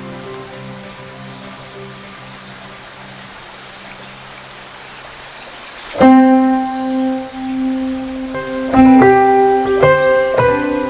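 Background instrumental music with plucked, guitar-like notes. It is soft and fading through the first half, then a loud note comes in about six seconds in, followed by several more near the end.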